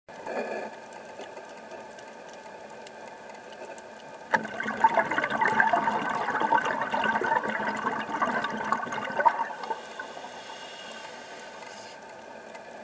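Underwater sound of a scuba diver exhaling through the regulator: a burst of bubbling and gurgling that starts about four seconds in and lasts about five seconds, over a faint steady whine.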